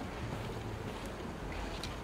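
Low, steady rumble of wind buffeting a phone's microphone while walking, with a couple of faint ticks of footsteps on stone paving about halfway through and near the end.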